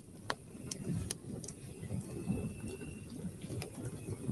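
Campfire crackling: an uneven low crackle with scattered sharp snaps and pops, a few standing out about a third of a second, a second, and three and a half seconds in. A faint thin high tone comes and goes behind it.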